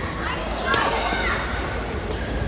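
Badminton rally: a sharp crack of a racket hitting the shuttlecock, with players' and spectators' voices and shouts in a reverberant sports hall.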